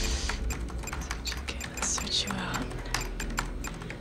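Computer keyboard being typed on quickly, key clicks in fast irregular succession over a low steady hum.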